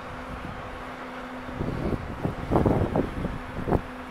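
Wind buffeting the microphone in a run of loud, uneven gusts through the second half, over a steady faint low hum.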